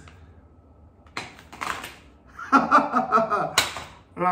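A coiled EV charging cable being put down on the floor: a rustle and clatter about a second in, then a sharp knock near the end. A brief low voice or chuckle comes just before the knock.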